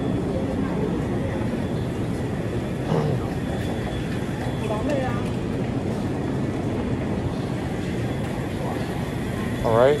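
Steady low background hum of a supermarket, with faint voices of other shoppers now and then.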